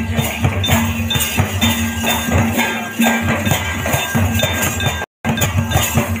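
Procession drumming: a large barrel drum beaten in a steady rhythm, with metallic clinking percussion over it. The sound drops out completely for a moment just after five seconds.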